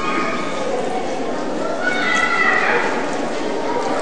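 Indistinct, low voices over a steady haze of hall noise, picked up by a public-address microphone.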